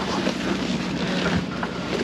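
A steady low hum under a constant rushing noise, with a couple of faint knocks about one and a half seconds in.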